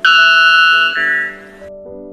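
White bellbird giving its Type 1 song, the loudest call recorded for any bird: one loud, ringing two-note call of about a second and a half, the second note higher, cutting off suddenly. Steady background music runs underneath.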